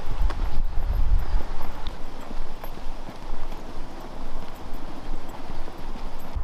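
Running footsteps in sneakers on an asphalt path: a repeated patter of shoe strikes over a low rumble.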